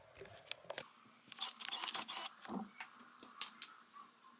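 Light clicks and rustling handling noise, a scattered few at first, then a dense flurry of them a little after a second in, and a couple more near the end.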